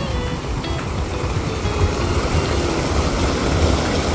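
Water spilling over the marine lake's concrete wall and cascading into the sea, a steady rushing and splashing with a strong low rumble underneath.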